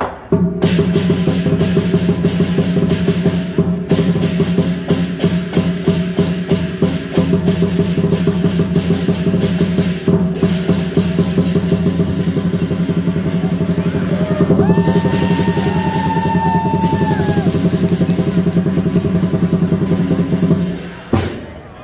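Chinese lion dance percussion: a drum beaten in fast, continuous strokes with cymbals clashing over it. It starts about half a second in and drops out briefly twice, around four and ten seconds in.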